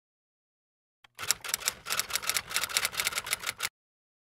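Typing sound effect: a fast, even run of keystroke clicks, starting about a second in and lasting about two and a half seconds before it stops suddenly.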